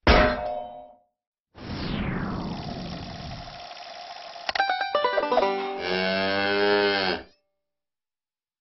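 Animated logo sting: a bright metallic ding that rings out for about a second. After a short gap comes a falling whoosh that settles into a steady whirr, like a See 'n Say toy's pointer spinning, then a quick run of clicks as it stops. It ends with a cow's moo lasting about a second and a half.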